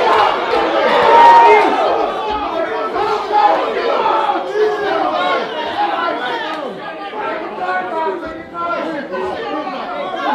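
Crowd of ringside boxing spectators chattering and shouting, many voices overlapping. It is loudest about a second in and then settles lower.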